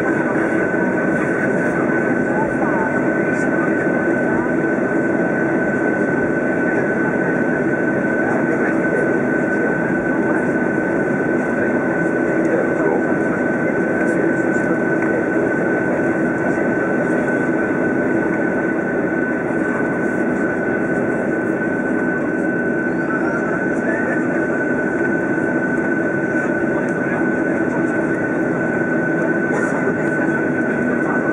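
Boeing 737's CFM56 jet engines at taxi power, heard inside the cabin over the wing: a steady rumble with a constant high whine.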